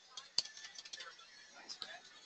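Computer keyboard keys being typed: a few scattered, faint key clicks, the sharpest about half a second in.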